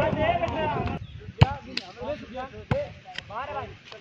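A volleyball being struck by players' hands: several sharp smacks, the loudest about a second and a half in, with voices calling out between the hits.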